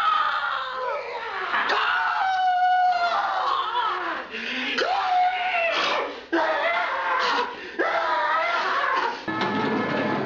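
Human voices shrieking and wailing without words, in long sliding cries of about a second each with short breaks between them. A fuller, lower sound comes in near the end.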